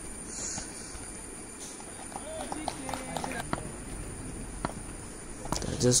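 Quiet open-air ambience with faint, distant shouts from players on the field about two to three seconds in, and a few soft, sharp clicks.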